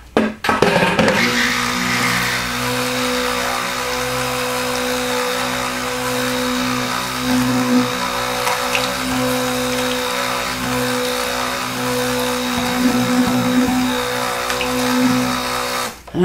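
Handheld stick blender (immersion blender) running steadily in a bowl of cold-process soap batter, blending oils and lye solution together. It switches on just after the start and cuts off abruptly at the end.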